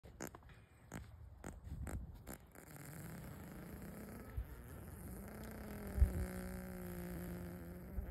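Horse passing a long, drawn-out fart: it starts about three seconds in as a low rasp and settles into a steady, low buzzing tone that runs on for several seconds. A few sharp clicks come before it, and a short thump comes about six seconds in.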